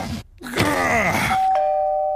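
A voice groaning with effort, its pitch sliding, then, about a second and a quarter in, a two-note ding-dong doorbell, the second note lower and held.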